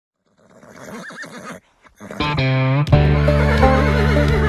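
A horse whinnying for about a second, its pitch wavering up and down. Music starts about two seconds in, and a heavy bass beat comes in just before the three-second mark.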